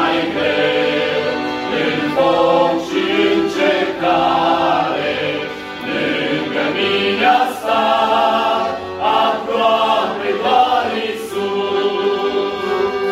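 Male vocal group singing a Romanian Christian song in harmony, with accordion accompaniment.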